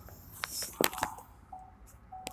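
A few sharp clicks and knocks inside a car, with faint short beeps of the car's warning chime starting about a second in.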